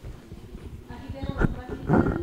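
Indistinct voices in the room, strongest in the second half, over a string of soft low knocks.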